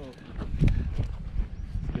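Irregular soft knocks and thumps of handling, with faint voices underneath.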